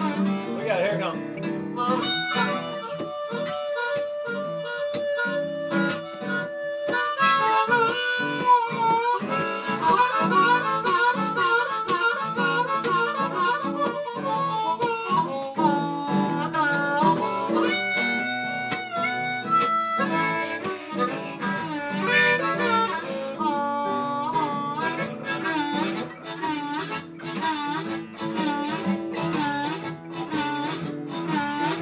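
Harmonica played over a strummed acoustic guitar, with bending, dipping notes in a blues-style jam.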